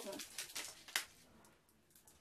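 Faint rustling and light taps of paper tens-bar cut-outs being handled and pulled out of a paper place-value pocket, the sharpest tap about a second in.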